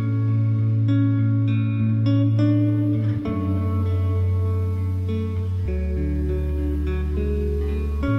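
Instrumental background music with plucked guitar over sustained low chords; the chord changes about three seconds in and again near six seconds.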